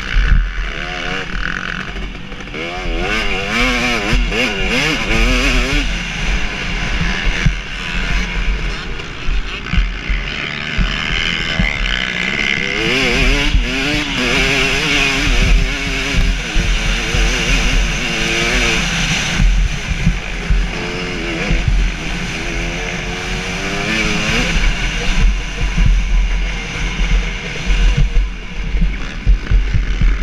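2017 KTM 250 SX two-stroke motocross engine under race load, revving up and dropping back over and over as the rider works the throttle and gears, with wind buffeting the camera microphone.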